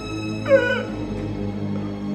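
A man's short wailing cry that falls in pitch, about half a second in, over sustained dramatic background music.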